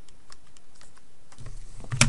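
A TI-30XS MultiView calculator being handled and moved across paper: a few light scattered clicks, then a dull thump near the end as it is set down.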